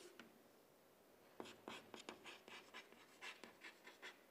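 Faint chalk strokes on a chalkboard as words are written: a quick series of short taps and scratches that starts about a third of the way in, after a near-quiet opening.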